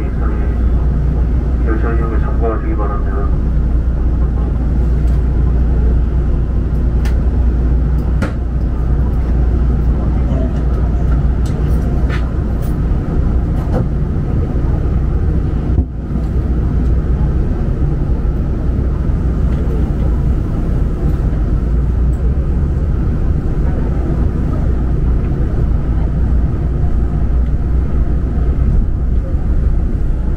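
Daegu Monorail Line 3 train running: a loud, steady, deep rumble, with brief voices in the first few seconds and a few faint clicks later on.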